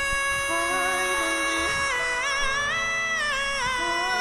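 Male pop vocalist singing live, holding one long high note over backing music. About halfway through, the note lifts slightly and wavers with vibrato, then settles again.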